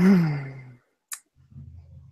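A woman's voiced sigh that falls in pitch and fades within a second, followed about a second later by a single short click.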